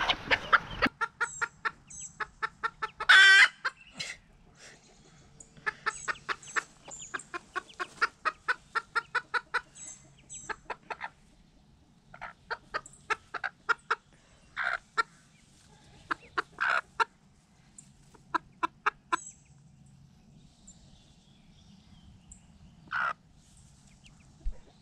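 Mallard ducklings peeping in quick runs of short, high notes, with a few louder single calls from a broody bantam hen: a longer one about three seconds in and three more later on.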